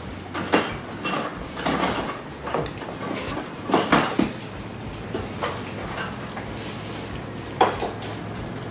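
Hands working a seafood boil at the table: irregular short cracks, clicks and knocks of crab shells, dishes and utensils. A cluster of louder clicks comes about four seconds in and a single sharp one near the end.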